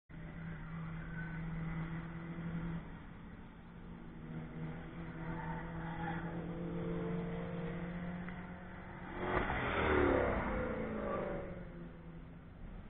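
Car engines running on a racetrack, heard steadily at a distance. About nine and a half seconds in, one car passes close by; its engine swells to the loudest point and the note drops in pitch as it goes past.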